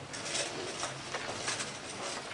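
Soft rustling from handling, a run of short scratchy brushing sounds spread through the two seconds.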